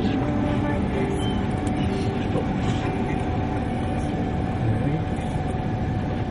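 Steady rumble of a moving vehicle heard from inside, engine and road noise at an even level.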